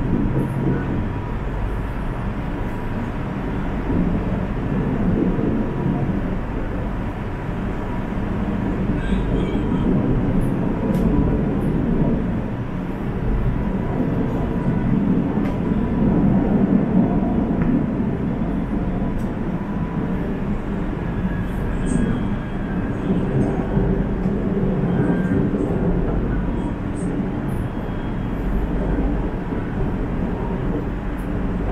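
Steady running noise inside a KTM Class 92 electric multiple unit in motion: a continuous low rumble of the wheels on the track that swells and eases slightly, with a faint steady tone and occasional small clicks.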